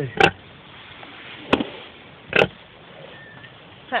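Pigs grunting in three short, sharp bursts about a second apart.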